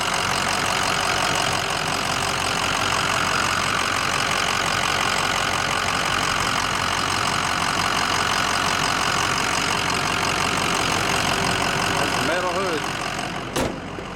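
Ford 6.0-litre Power Stroke V8 turbo-diesel idling steadily, heard close up in the open engine bay. It gets quieter a couple of seconds before the end.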